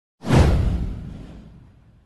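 A whoosh sound effect with a deep low boom. It starts suddenly about a quarter second in and fades away over about a second and a half.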